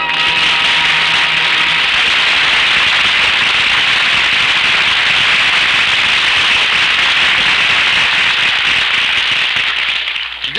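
Audience applause: many hands clapping in a dense, steady clatter, tapering off near the end, with the last held note of the orchestral music dying away in the first couple of seconds.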